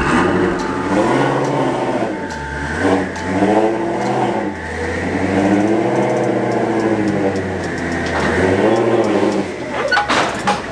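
Twin-turbocharged Ford Shelby GT350 V8 revving up and dropping back four times, each rise and fall lasting one to three seconds.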